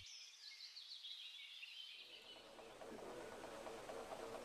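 Near silence: faint ambience with a soft hiss that rises slightly after about two seconds.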